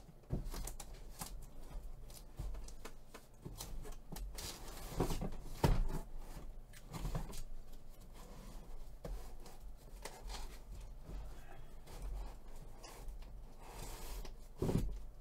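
Off-camera handling noise: a string of light clicks, knocks and rustles, with a couple of heavier thumps about five to six seconds in.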